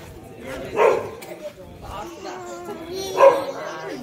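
A dog barking: one bark about a second in and another just past three seconds.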